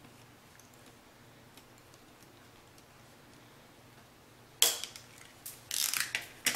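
Quiet room tone, then about four and a half seconds in a sharp click from a plastic pen being worked apart by hand, followed by a few quieter clicks near the end.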